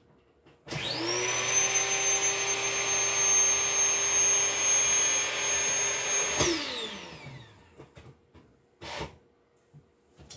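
A small electric motor appliance switches on about a second in, spins up to a steady high whine, runs for about six seconds, then switches off and winds down. A few faint knocks follow near the end.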